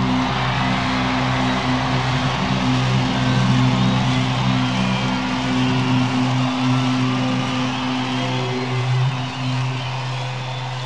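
Rock music at the end of a track: a sustained chord held and ringing over a dense wash of distorted noise. The lowest bass notes drop out a little past halfway.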